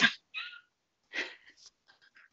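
A few short, breathy bursts of laughter, airy exhalations rather than voiced laughs, quieter than the talk around them.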